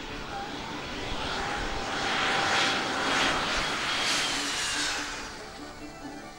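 Rear-engined twin-jet airliner rolling past close along the runway. Its engine noise swells to a peak about two to five seconds in, with a high whine that drops slightly in pitch as it goes by, then fades. Soft music plays underneath.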